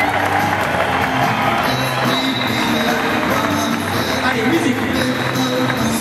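Background music with held notes in stepwise phrases, played loud and steady over a hall sound system, with a murmur of crowd noise beneath.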